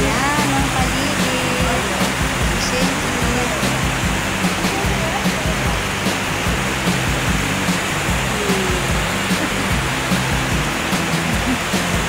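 River water rushing over rocks in shallow rapids: a steady, loud rush of running water.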